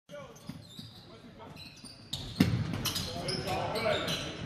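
Basketball game on a hardwood gym floor: short sneaker squeaks and one loud ball thud a little past halfway, with voices in the gym growing louder in the second half.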